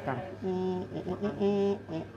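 A person's voice making two held, steady-pitched sounds like a drawn-out hum or vowel, each about half a second long, with short murmured fragments between them.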